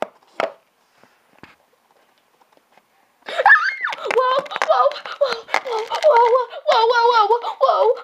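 A few faint clicks of plastic toy figures being handled on a table. About three seconds in, a child's high-pitched voice starts up loudly and runs on.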